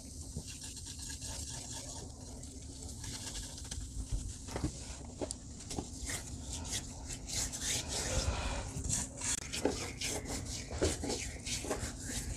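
Hands rubbing a gritty foot scrub of coffee grounds, lime juice and baking soda over bare feet and heels: soft, scratchy rasping strokes, busier in the second half.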